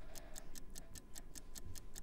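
Quiet, even, fast ticking like a clock, about seven ticks a second: a countdown-timer tick sound effect.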